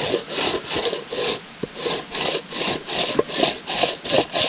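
Hand-twisted boilie crusher grinding hard pop-up boilies into small pieces. It makes a rasping crunch in quick back-and-forth twists, about three or four a second.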